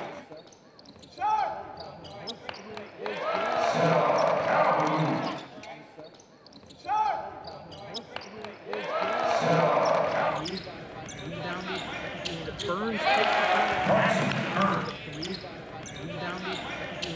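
Basketball game sounds on a hardwood court: the ball bouncing, sharp short squeaks of sneakers on the floor, and players' and spectators' voices echoing in a large, mostly empty arena.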